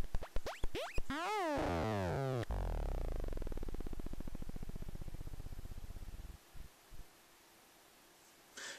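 Handmade Noiseillator noise synth making electronic noise as it is switched off. Clicks and wobbling squeals come first, then a buzz that falls in pitch and slows into separate ticks before cutting out a little past six seconds in.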